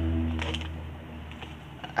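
Faint scattered clicks and crinkles of gloved hands working moist compost in an aluminium foil pan, over a steady low hum.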